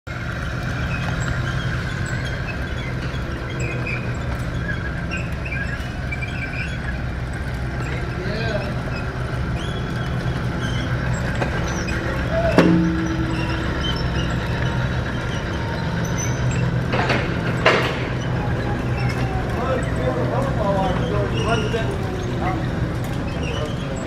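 Steady hum and rattle of a 0.37 kW three-phase gear motor running a hinged steel-belt chip conveyor. A sharp clank comes about halfway through, and two more knocks follow a few seconds later.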